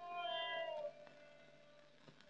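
Soft film background music: a single held instrumental note that slides slightly down in pitch and fades out about a second in.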